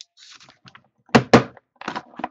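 Cardboard trading-card box and its insert tray being handled: light rustling, then two quick thunks a little past a second in, with more handling noise near the end.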